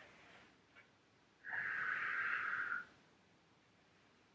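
A single long breath out, heard as a soft hiss lasting about a second and a half, starting about a second and a half in, from a person holding a seated forward stretch.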